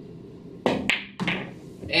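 A pool shot: the cue tip clicks against the cue ball about two thirds of a second in, the cue ball clacks into the object ball soon after, and a low knock follows near the end as the ball reaches the pocket.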